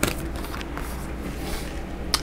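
Oracle cards being handled and drawn from the deck, a soft papery rustle and slide over a low steady room hum.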